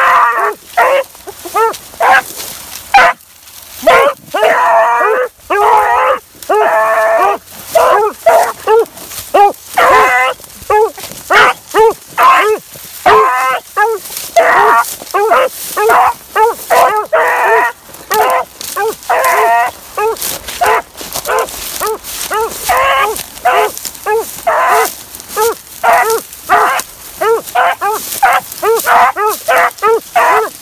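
Beagles baying on a scent trail, the hound music of a brace running game. There is a steady string of bays: some long, wavering bawls early on, then shorter, quicker chop notes, often two or more a second.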